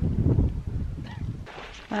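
Wind buffeting the microphone: a loud low rumble in the first second that then drops to a quieter steady rush.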